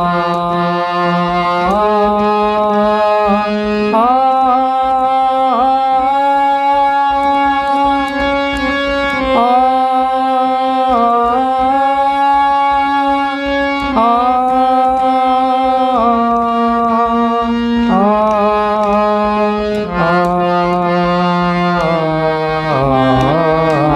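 A man singing sustained notes on the vowel 'aa' (aakar riyaz), doubled on a harmonium; each note is held about two seconds before stepping to the next swara, with short slides between notes.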